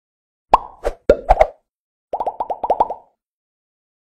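Cartoon plop sound effects for an animated logo intro: about five separate pops in the first second and a half, then a quick run of about eight, each a short sharp pop whose pitch drops quickly.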